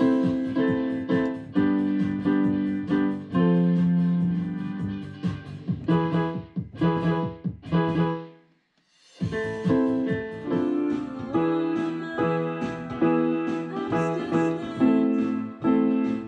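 Roland FP-30 digital piano played by hand, a run of notes and chords struck one after another. The playing breaks off for about a second just past halfway, then carries on.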